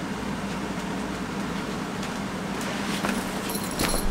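Steady room hum and hiss from a running machine, with a few soft clicks and rustles near the end as someone moves in close to the microphone.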